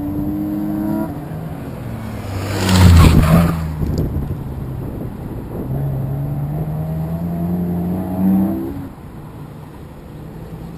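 A car's engine on an autocross run, revving hard. It passes loudly close by about three seconds in, then pulls steadily up through the revs for a few seconds and lifts off shortly before the end.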